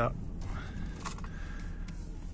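Steady low rumble inside a slowly moving car, with a few faint clicks through it; one short spoken word at the very start.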